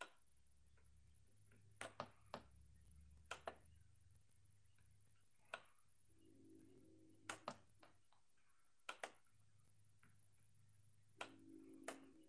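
About a dozen short sharp clicks, mostly in pairs a fraction of a second apart, over near silence with a faint low hum: the clicking of a computer mouse.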